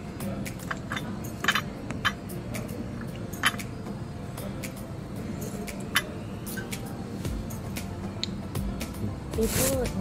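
Restaurant dining-room background of music and chatter, with sharp clinks of tableware several times. Near the end comes a louder rustle of a paper napkin being pulled out.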